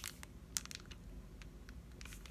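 Faint crinkling and ticking of a clear-stamp set's plastic packaging being handled, with a few sharp clicks in the first second over a low steady room hum.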